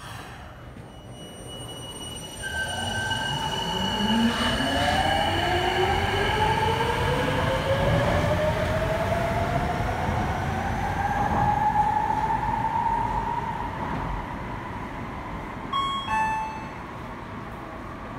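A rubber-tyred Sapporo Subway Namboku Line train pulling away: its traction motors whine in several tones that climb steadily in pitch as it accelerates over about ten seconds, over a low running rumble. A brief chime of short high notes sounds near the end.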